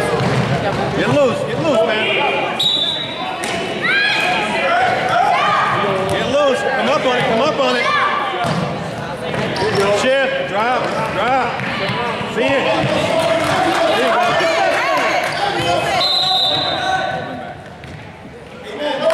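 Basketball game sounds in a gym: a ball bouncing on the hardwood floor while players and spectators call out. A short referee's whistle sounds near the end.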